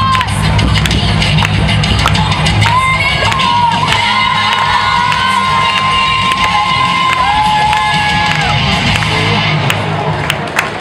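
Loud dance music for a formation routine, with a steady bass beat and long held high melody notes, over a cheering crowd in a hall. The music stops just before the end.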